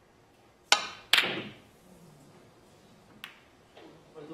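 Snooker shot: the cue tip clicks against the cue ball, then about half a second later the cue ball cracks into an object ball, which is the loudest sound. A faint single click of ball contact comes near the end.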